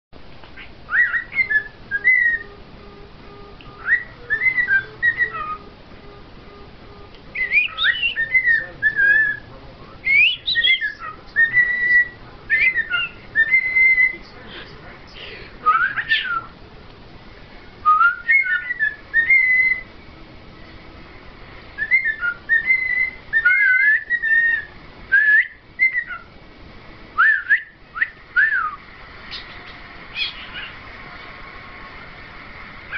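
Cockatiel whistling, a string of short melodic phrases of sliding, rising and falling notes with brief pauses between them.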